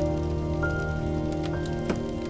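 Wood fire crackling, with a few sharp pops late in the clip, under slow, peaceful music of long held notes; a new note comes in about a third of the way through and another a little past halfway.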